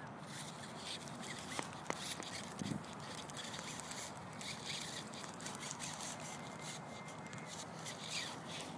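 Footsteps through grass with rustling and handling noise on a handheld phone microphone, a steady run of soft crackles.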